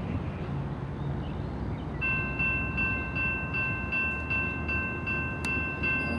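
Freight train's diesel locomotives rumbling by, and from about two seconds in a railroad crossing bell ringing in a steady, rapid beat, nearly three strikes a second, as the crossing gates are activated.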